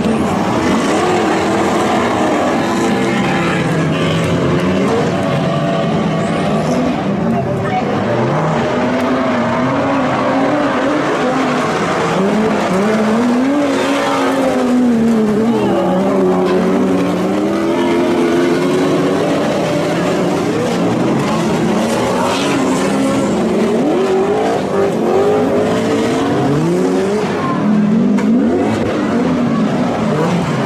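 Several stock cars with engines over 1800 cc revving hard together on a dirt track. Their overlapping engine notes keep rising and falling as they accelerate and lift.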